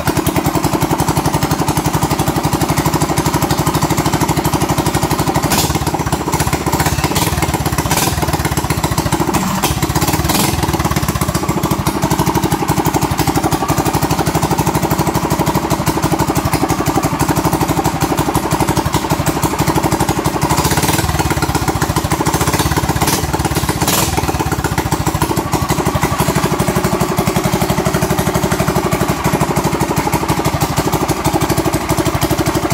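Predator 212 single-cylinder four-stroke engine running steadily through open twin chrome header pipes. A few short, sharp crackles come through now and then.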